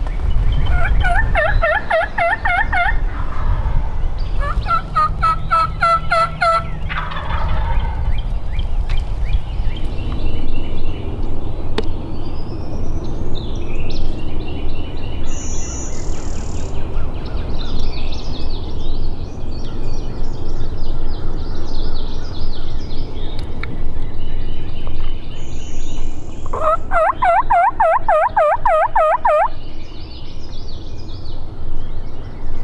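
Tom wild turkey gobbling three times, each a rapid rattling gobble of about two seconds: two close together at the start and one near the end. Smaller songbirds call in between.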